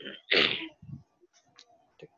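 A person sneezing once: a single short, sharp burst about a third of a second in.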